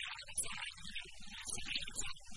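Indistinct voices of people talking, with no clear words.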